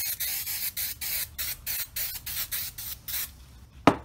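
3M Super 77 aerosol spray adhesive being sprayed in a quick series of short hissing bursts, about three a second, onto a flat panel. A single sharp knock sounds just before the end.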